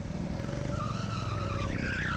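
Go-kart engine running steadily at speed, with the tyres squealing through a corner starting a bit under a second in, the squeal wavering and rising slightly near the end.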